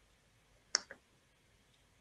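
Near silence, broken a little under a second in by one short click and a fainter second click just after it.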